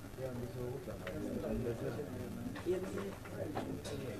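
Indistinct chatter of several people talking away from the microphone, with a few light clicks.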